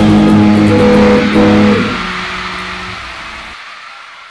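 Electric guitar playing chords with held notes, then a last chord left ringing and fading away over the second half.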